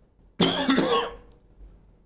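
A man gives one short, loud cough to clear his throat, about half a second in.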